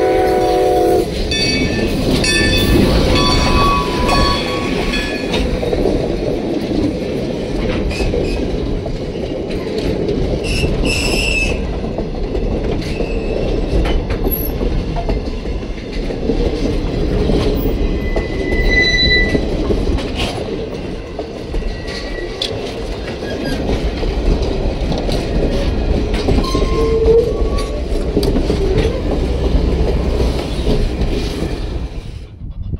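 A steam locomotive's whistle sounds a chord and cuts off about a second in. A grade-crossing bell rings for a few seconds, and a passenger train rolls past close by: a steady rumble with the clickety-clack of coach wheels over the rail joints.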